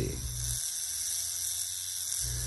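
Electric Shark Innercoil coil tattoo machine buzzing steadily, driven by a hammerhead wave from a phone app. Its low hum drops out about half a second in, leaving only the high buzz.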